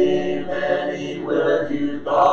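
A congregation singing a hymn a cappella, voices alone without instruments, holding each note before moving to the next.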